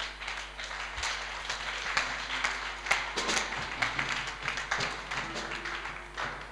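Congregation applauding: many hands clapping at once in a steady patter.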